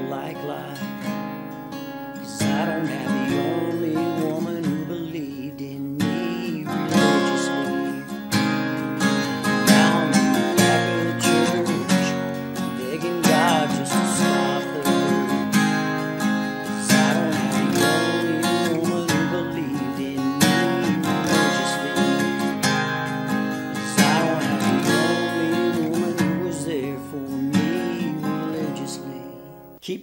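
Steel-string acoustic guitar with a capo on the first fret, played with a soft picked passage that builds into steady strumming of chords, then dies away near the end.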